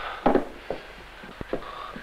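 Wooden desk drawer being pulled open and its contents handled: a short scraping rustle, then a few light knocks and one sharp tap.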